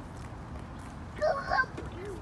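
Steady low outdoor background rumble, then a short, high-pitched vocal sound from a young child a little over a second in.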